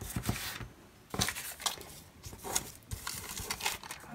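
Paper stickers being peeled off their backing sheet and pressed onto planner pages: irregular rustling and crackling of paper, with a short lull about a second in.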